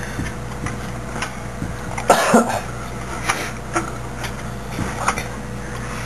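A man coughs once, about two seconds in. A few faint clicks follow as a component is pressed into a slot on a PC motherboard.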